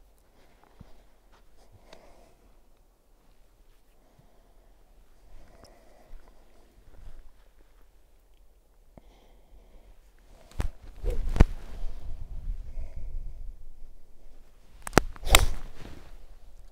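Quiet, then a low rumble with a couple of clicks from about ten seconds in. Near the end comes a sharp crack: an iron club striking a golf ball off the tee.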